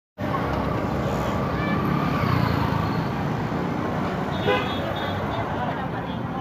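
Street traffic noise with motorbike engines running and crowd voices, and a short horn toot about four and a half seconds in.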